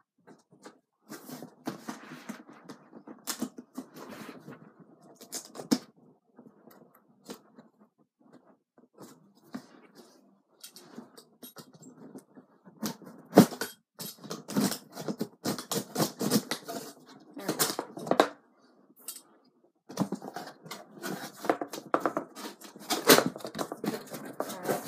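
A cardboard box being opened by hand: flaps and packing scraping, rustling and clicking in irregular bursts, busier about halfway through and again near the end.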